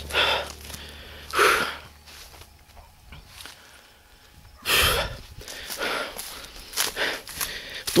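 A man breathing hard in separate breaths while walking, with footsteps and rustling through low sugarcane; a louder rustle about five seconds in, and quicker steps near the end.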